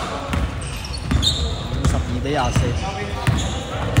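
Basketball being dribbled on a hardwood court in a large sports hall: a short, dull bounce repeating about every three-quarters of a second.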